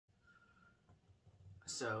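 Quiet room tone with a faint steady high hum and a few soft clicks, then a man's voice starts speaking near the end.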